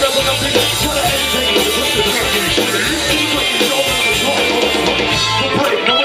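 Live band music played loud through a PA, with drum kit and guitar in a steady groove.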